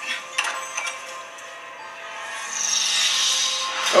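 Horror-trailer soundtrack: a few light knocks in the first second, then a hissing whoosh that swells from about halfway and builds into a sharp hit at the end, under dark background score.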